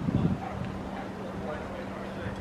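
Wind buffeting the microphone for the first moment, then a steady low hum under faint distant voices.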